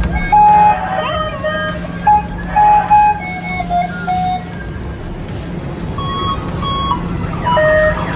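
Tinny, jingle-like amusement-ride music: short separate melody notes over a steady low hum and a haze of hall noise with background voices.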